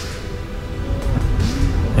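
Background music with a steady low drone.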